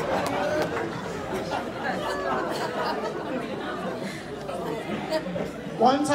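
Audience chatter: many voices murmuring and talking over each other in a hall, slowly getting quieter as the laughter from the joke dies down.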